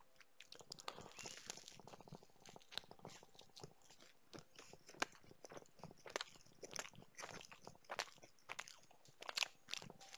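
A man chewing food close to a headset microphone: faint, irregular crunching clicks.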